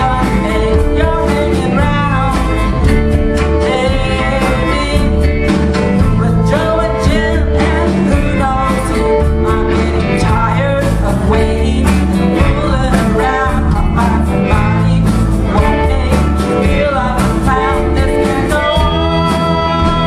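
Live blues band playing at full volume: electric guitar, bass and drums, with an amplified harmonica played into a hand-held microphone carrying bending lead lines.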